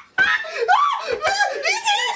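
A man laughing hard, breaking into high-pitched shrieking whoops that glide up and down, after a brief pause at the start.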